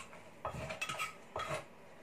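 Wooden pestle pounding salad in a clay mortar: about three knocks roughly half a second apart, each with a short hollow ring from the mortar.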